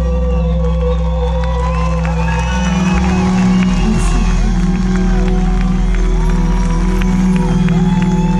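Live band holding sustained chords over a bass line while the audience cheers and whoops.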